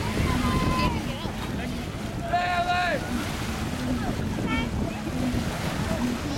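Wind buffeting the microphone over small waves washing onto a sandy beach.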